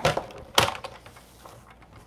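Cardstock being handled on a paper trimmer: a sharp knock about half a second in, then a few faint taps.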